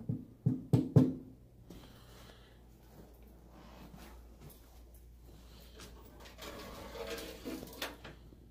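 Four or five sharp knocks or thuds in quick succession in the first second, then quiet room sound, with a stretch of softer rustling noise near the end.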